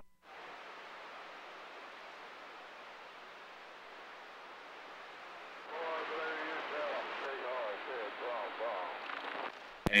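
CB radio receiver hiss from the set's speaker. About six seconds in, a weak station's voice comes through faintly under the static. A sharp click sounds near the end.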